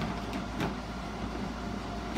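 Plastic storage tubs being handled and shifted, with a few light knocks of plastic in the first second, over a steady low hum.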